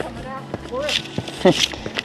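A man laughing softly in short, breathy bursts.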